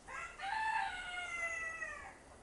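A drawn-out animal call: a couple of short notes, then one long, clear note that falls slightly in pitch over about a second and a half.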